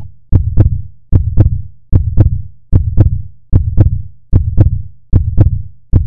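Heartbeat sound effect: a deep double thump, lub-dub, repeating steadily about 75 times a minute, each beat with a sharp click on top.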